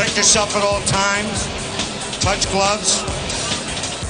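A boxing referee giving the two fighters their pre-fight instructions in English, spoken into a handheld microphone, over background music.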